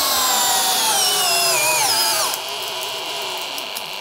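An 18 V cordless drill driver running flat out against a torque-test brake: its motor whine falls steadily in pitch as the load builds, drops faster and breaks off about two seconds in as the drill stalls at its peak torque, leaving a quieter steady noise. The drill is struggling under the load.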